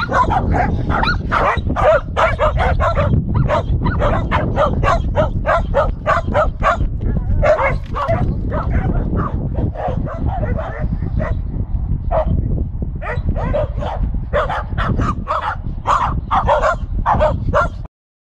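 A group of shelties and a rough collie barking and yipping excitedly in quick, overlapping high-pitched barks, several a second, with a brief lull about two-thirds of the way through. A steady low rumble runs underneath.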